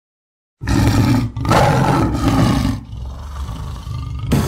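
A tiger roaring twice, a short roar and then a longer one, starting about half a second in and trailing off into a low rumble.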